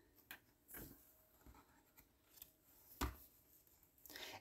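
Near silence broken by a few faint paper rustles and taps, the loudest about three seconds in: a picture-book page being turned.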